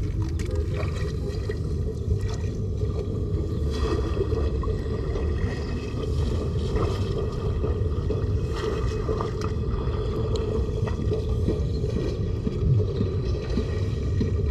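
Steady low rumbling noise, heaviest in the bass, with faint scattered light clicks over it.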